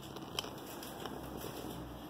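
Quiet room tone with a few faint clicks and light rustling, the sharpest click a little under half a second in.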